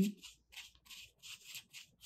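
Paintbrush stroking thick acrylic house paint onto fabric interfacing: a series of short brushing strokes, about three a second.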